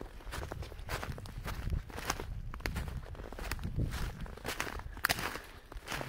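Footsteps of a person walking through shallow snow over brush on the forest floor: irregular crunching steps, about two a second.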